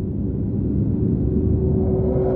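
Title-card sound effect: a low rumble with a steady hum in it that grows a little stronger about halfway through.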